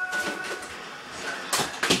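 Television programme audio heard across a room: a held musical note fades out early on, followed by a short loud rush of noise about a second and a half in.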